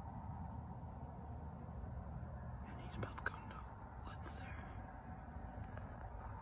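Faint handling and rustling noise over a low steady rumble, with a few soft hissy scuffs midway and one sharp click about three seconds in.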